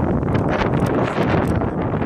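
Wind buffeting the phone's microphone: a loud, rough rushing noise with no voice.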